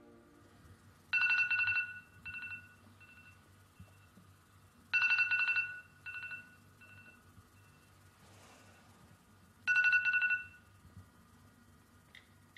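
An electronic telephone ringing: three trilling rings about four seconds apart, each followed by a few fainter repeats that fade away like an echo.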